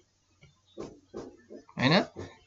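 A man's short murmurs and breaths: four brief vocal sounds in the second half, the last running into the start of speech.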